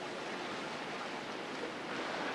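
Steady rush of turbulent whitewater on the slalom course.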